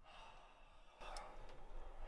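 A person sighing, a breathy exhale that grows louder about halfway through, with a small click soon after.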